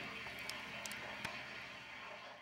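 Faint steady hiss with a few small clicks in the first second or so.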